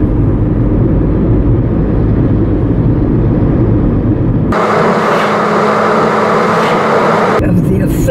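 Steady low road and engine rumble heard from inside a moving car. Just past the middle, for about three seconds, the low rumble drops out abruptly and a hissier, higher noise replaces it, then the rumble cuts back in.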